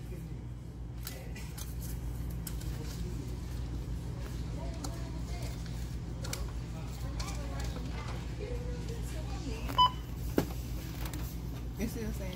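Checkout-counter ambience: a steady low hum with faint voices in the background, and one short electronic beep from the register near the end.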